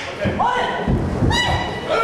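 A heavy thud of a wrestler's body hitting the ring canvas about a second in, with high-pitched shouting around it.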